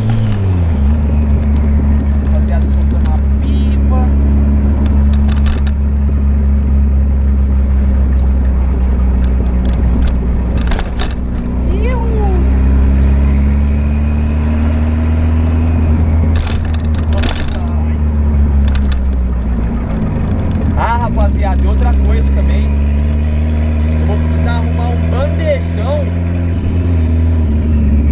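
A VW Gol's engine heard from inside the cabin while driving. The engine note drops sharply at the start, holds fairly steady, then dips again about twenty seconds in before settling, as with lifting off or changing gear.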